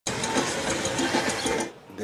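A small machine running with a fast, even mechanical clatter, about six or seven beats a second, that stops shortly before the end.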